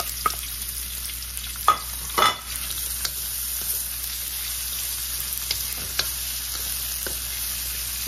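Sliced onions and ginger sautéing in an aluminium wok, with a steady sizzle. A wooden spatula stirring them knocks and scrapes against the pan now and then, loudest about two seconds in.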